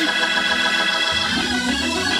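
Electric organ holding sustained chords.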